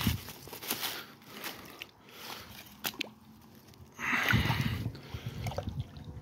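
Footsteps crunching through leaf litter and twigs on a pond bank, with a few sharp snaps, then water sloshing as the pond is disturbed, louder, from about four seconds in.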